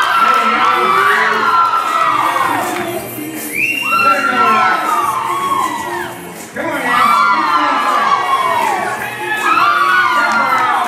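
Crowd of spectators, many young voices among them, shouting and cheering on a rider working a cow. The calls overlap, each falling in pitch, and come in waves that swell again about three and a half seconds in, near seven seconds and near the end.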